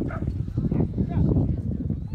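A dog barking a few short times over a steady rumble of wind on the microphone, with voices in the background.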